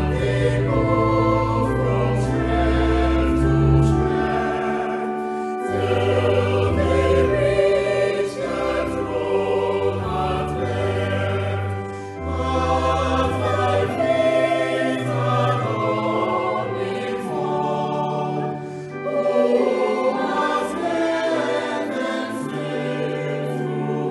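Mixed-voice church choir singing a hymn, with held low bass notes underneath and brief breaths between lines.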